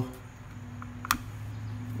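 A single sharp click about a second in as the spring-loaded red safety cover of a toggle switch is flipped open, over a steady low hum.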